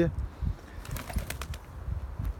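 Strong gusty wind rumbling on the microphone, with a few short sharp clicks about a second in, while domestic pigeons flap and shuffle nearby.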